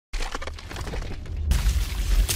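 Sound effect of a stone wall cracking and crumbling: crackling rubble, then a louder crash with a deep rumble about one and a half seconds in as the wall bursts apart.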